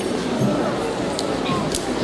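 Murmured audience chatter in a large hall, with a few sharp clicks in the second half.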